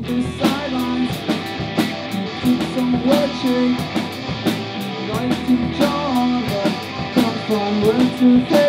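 Rock band playing an instrumental passage: two electric guitars, electric bass and a drum kit, with a steady beat of drum and cymbal hits and no singing.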